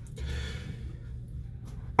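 Quiet room tone: a steady low hum under a soft, faint hiss, with no distinct event.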